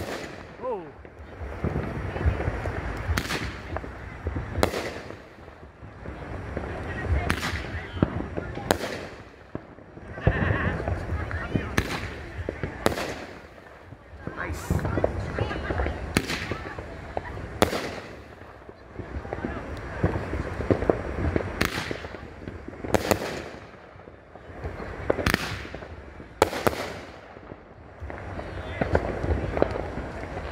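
A 500-gram, 15-shot Raccoon consumer firework cake firing in sequence. Sharp bangs of brocade and nishiki crown shell breaks come about every one to two seconds, each trailing off in a rumbling echo.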